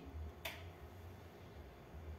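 A metal palette knife gives a single sharp tap about half a second in while yellow oil paint is dabbed onto a canvas, over a faint low hum.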